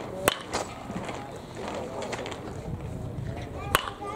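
A baseball bat hitting a pitched ball: a sharp crack shortly after the start, and another near the end, over background voices.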